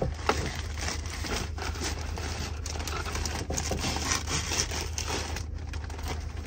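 Plastic packaging crinkling and rustling as a rhinestone steering wheel cover is pulled out of its wrapping, with irregular crackles throughout and a steady low hum underneath.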